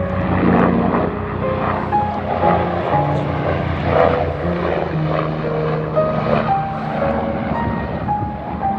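A helicopter flying overhead, its rotor and engine noise heard under background music.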